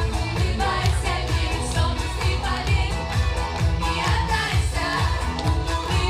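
Three girls singing a pop song together into microphones over a backing track with a steady bass beat, heard through a PA system.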